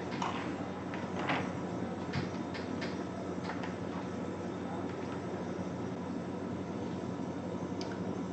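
Steady room hum with a few faint, light clicks in the first few seconds as small craft pieces are handled on a tabletop.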